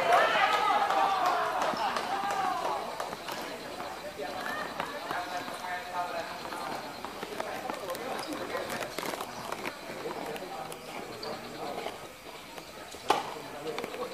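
Voices of people talking and calling out on a tennis court, loudest in the first few seconds, with a few sharp knocks of tennis balls struck by rackets, the loudest near the end.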